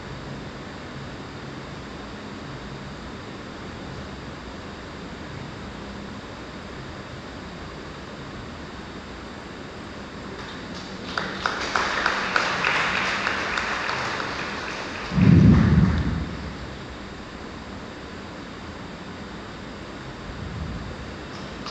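People in a church clapping for about four seconds, starting a little past halfway, with a short loud low thump just as it ends. Before the clapping there is only steady room hum.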